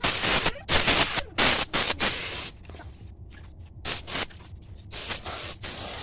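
Compressed-air gravity-feed spray gun hissing in repeated bursts as its trigger is pulled and released, spraying a coating onto driftwood. There is a quick run of bursts, a pause of over a second, then more short bursts.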